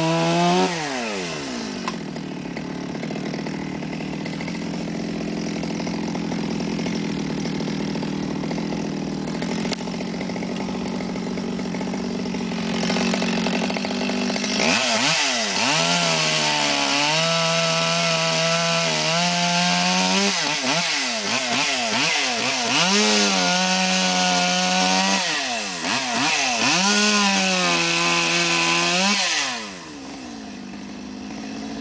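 Two-stroke chainsaw cutting into a pollarded willow. It runs fairly steadily for the first half, then is revved up and down again and again, its pitch dipping and climbing, and it drops away just before the end.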